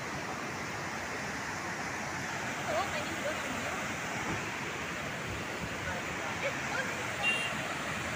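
Multi-tiered cascading waterfall and fast white-water river rushing steadily: a strong current. Faint voices are heard under it now and then.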